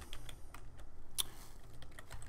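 Typing on a computer keyboard: a few irregular key clicks, one sharper click about a second in.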